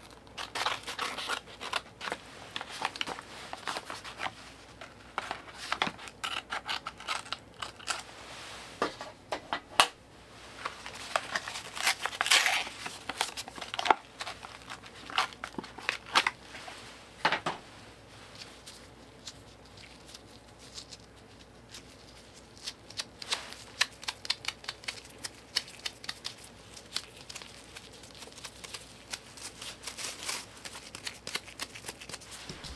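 Crinkly plastic wrapping of a self-adhesive bandage roll being handled and torn open close to the microphone, a run of sharp crackles with a longer, louder tearing stretch about midway.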